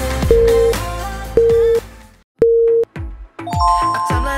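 Three identical electronic countdown beeps about a second apart, marking the last seconds of a workout interval, over upbeat background music. The music cuts out just before the third beep and comes back near the end.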